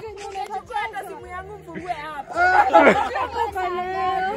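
Several people talking over one another in casual chatter, with a laugh near the end.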